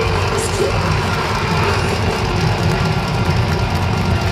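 Folk metal band playing live at full volume: a dense, steady wall of drums, guitars and bass, heard from inside the crowd.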